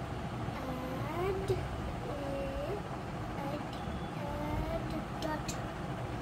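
Indistinct background voices, slow rising and falling calls, over a steady low rumble, with a few light clicks near the end.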